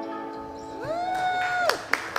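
The band's final guitar chord ringing out and fading, then a whoop from the audience that rises and holds for about a second, with clapping starting near the end.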